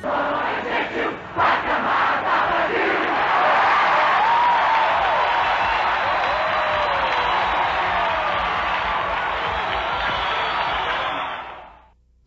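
A large protest crowd shouting and cheering, a dense mass of voices with single shouts rising and falling above it; it fades out near the end.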